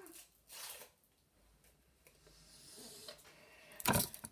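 Handling noise: faint rustling that slowly builds over a couple of seconds, ending in a sharp, loud crackle just before the end.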